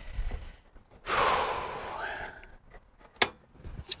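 A man's long, exasperated sigh, a breathy out-breath that fades away, from frustration at a dropped C-clip. A single sharp click follows near the end.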